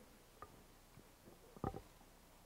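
Near silence: faint room tone through a podium microphone, with a small click about half a second in and a brief soft sound near the end.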